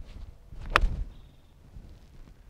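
A golf iron striking a ball off fairway turf: a single sharp click about three-quarters of a second in, over a low rumble.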